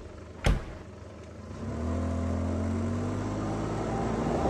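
A single sharp click about half a second in. Just over a second later a car engine starts and runs steadily, its note rising slightly in pitch.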